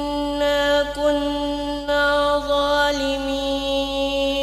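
One voice chanting Quran recitation in the steady murottal style, holding long melodic notes with small turns in pitch.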